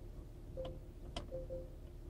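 Four faint, short ticks from the Lexus GS 350 infotainment system as the cursor of its mouse-like Remote Touch controller moves across the menu icons.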